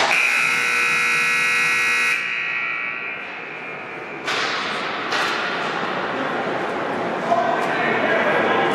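Rink buzzer sounding one steady, loud blast of about two seconds that cuts off abruptly, leaving a short echo in the hall.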